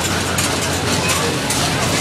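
A spinning carnival ride running: steady, dense mechanical noise with crowd voices in the background.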